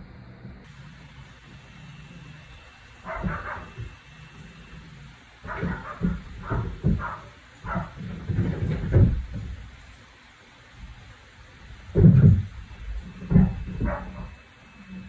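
Irregular knocks and thuds from the upstairs neighbours' apartment, heard through the ceiling, in clusters. The loudest bangs come near the end.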